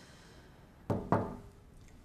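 Two quick knocks on a door, about a quarter second apart, roughly a second in.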